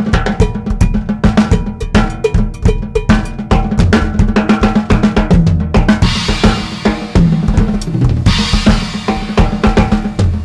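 Drum kit solo on a kit whose snare is a reworked 1970s Gretsch Jasper shell drum, re-drilled to 10 lugs: fast snare and tom strokes with bass drum underneath. Tom fills step down in pitch about halfway through, and cymbal crashes ring over the last four seconds.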